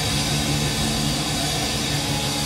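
A live rock band's fuzz-distorted electric guitar and bass ringing out as a steady, dense wall of sound, with few distinct drum hits.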